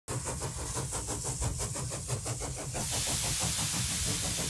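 Engine-like mechanical running with a rapid, even beat, joined about three seconds in by a loud hiss that carries on.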